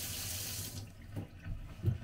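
Kitchen mixer tap running into a stainless-steel sink, shut off abruptly under a second in. A few soft knocks follow.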